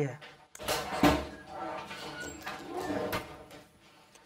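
An interior door being opened: a latch click and then a thump about a second in, followed by faint, low voices.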